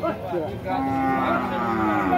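Cattle mooing: one long, steady call that starts about half a second in and drops slightly in pitch.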